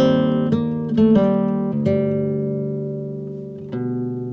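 Acoustic guitar music: several plucked notes in the first two seconds, then a chord left ringing and slowly fading until a new one is plucked near the end.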